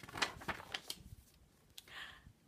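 Paper rustling and crackling as a picture book's pages are handled: a few short crackles in the first second and one more near the end.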